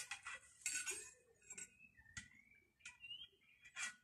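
Sword blade striking a home-made practice dummy during parry-and-riposte drills: about half a dozen short, sharp taps, the loudest right at the start.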